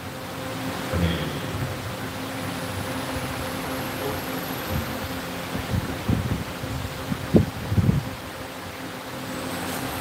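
Steady electrical hum and the even whir of a mechanical fan, picked up by a live microphone, with a few soft low thumps in the second half.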